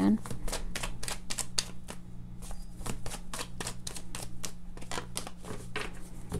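A deck of tarot cards being shuffled by hand: a quick run of card snaps, about five a second, with a brief lull about two seconds in.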